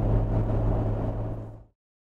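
Steady low hum of engine and road noise inside an Ineos Grenadier's cabin, cruising on a motorway while towing a heavy trailer, fading out about a second and a half in.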